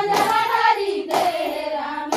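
Women singing a Chhattisgarhi Sua song in chorus, with a sharp clap of hands about once a second, twice here, marking the dance's beat.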